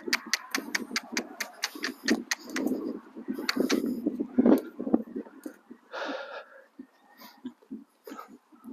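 A young Connemara horse's hooves, with a person's footsteps, crunching on a gravelly sand arena surface as the horse walks and then trots: a quick run of sharp crunches, about five a second, then irregular duller thuds. A brief breathy noise about six seconds in.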